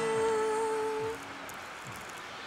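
A woman's voice holding a final note over a ringing acoustic guitar chord. The note ends about a second in and the guitar dies away soon after, leaving only faint background.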